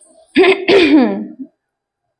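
A woman's short wordless vocal sound in two parts, the second sliding down in pitch.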